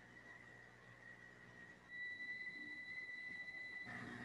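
Faint room tone, then about halfway through a thin, steady, high-pitched whine from the sound system becomes louder and holds.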